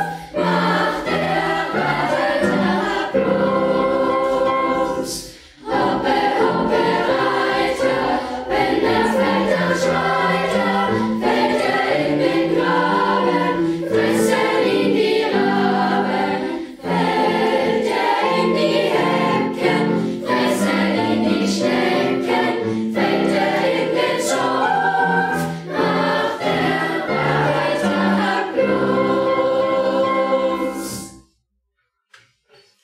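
Children's choir singing a children's song in a choral setting, in phrases with short breaks about five and seventeen seconds in.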